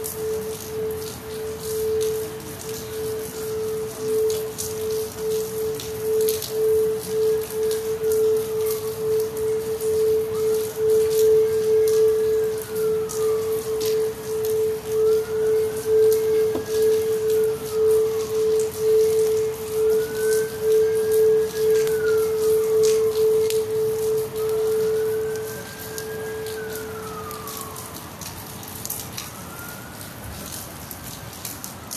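A crystal singing bowl sung by circling its rim, one steady tone with a pulsing waver that fades out about 26 to 28 seconds in. Rain drips and patters throughout, and a fainter siren wails up and down every four to five seconds.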